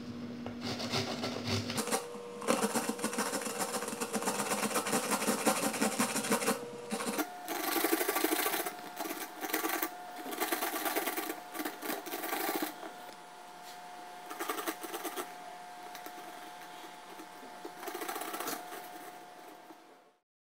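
A carrot being grated on a plastic hand grater into a pot: fast, rhythmic scraping strokes in runs with short pauses, softer in the second half.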